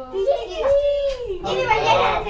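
Young children's high-pitched voices calling out and babbling, with one long drawn-out call about half a second in.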